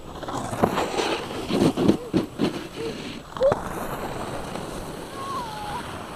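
Snowboard sliding past over packed snow: a rough scraping hiss of the board on the snow for about three seconds, with several sharp scrapes and knocks, then it fades back into wind noise.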